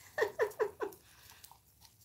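A woman laughing: four short "ha" pulses in quick succession within the first second.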